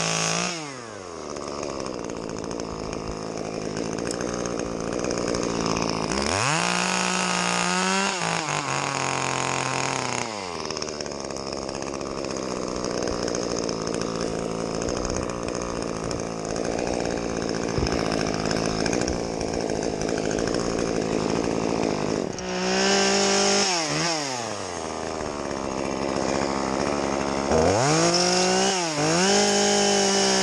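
Two-stroke chainsaw revving up to full throttle and dropping back toward idle several times while cutting branches, held at high revs for a second or two each time, about six seconds in, again past twenty seconds and near the end.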